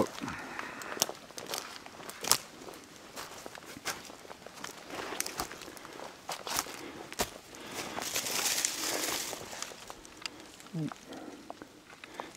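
Footsteps through dense forest undergrowth: ferns, leaf litter and twigs rustling and snapping underfoot in an irregular run of cracks. The longest rustle, of fronds brushing past, comes about eight to nine seconds in.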